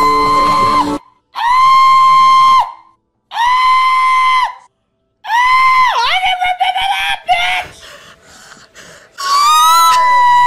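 A person shrieking in a high voice: three held shrieks of about a second each with short silent gaps, then a lower wavering cry, and another held shriek near the end.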